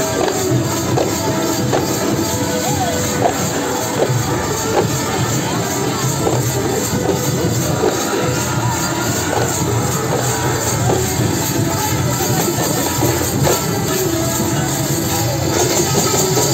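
A group of large brass hand cymbals clashing in a fast, continuous rhythm, with drums beneath.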